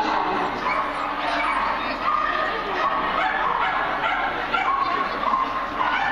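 Small white dog yipping repeatedly in a rapid series of short, high barks, about two or three a second, over background crowd chatter.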